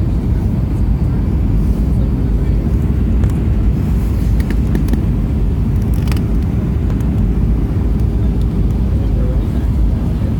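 Airliner cabin noise on approach with flaps extended: a steady low rumble of the engines and airflow, with a constant hum running through it.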